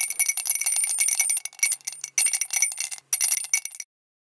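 Metal coins clinking and jingling, a sound effect of coins dropping into a piggy bank: rapid runs of bright metallic clinks with a few short breaks, cutting off abruptly just before the end.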